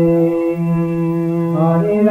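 Kirtan chanting: a voice holds one long chanted note with little change in pitch, over steady musical accompaniment.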